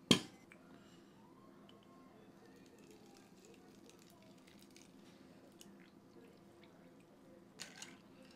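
Faint pouring of liquid from a bottle over ice in a rocks glass, with small scattered ice clicks, and a few sharper clinks of a bar spoon against the ice and glass near the end.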